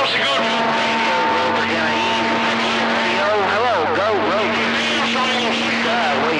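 CB radio speaker receiving skip on a crowded channel: garbled, overlapping voices under heavy static, with steady whistling tones from clashing signals running through them.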